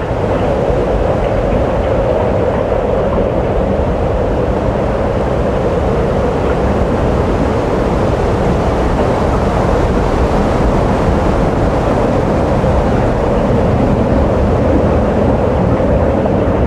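A dense, steady rumbling noise texture in the soundtrack of a dance piece. It starts abruptly out of silence just before and holds level, with a low rumble under a hum-like band in the middle.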